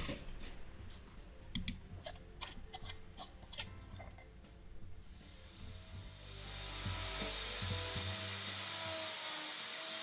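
Scattered small metal clicks and taps as bolts are set into an aluminium outrigger base. About six seconds in, a steady rubbing hiss takes over as a cloth wipes excess silicone sealant from around the base.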